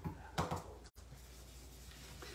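Two soft, quick taps about half a second in, typical of a foam blending brush dabbed on an ink pad, then faint room tone.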